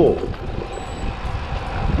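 Road bike rolling along asphalt: a steady low rumble of riding noise with wind on the microphone.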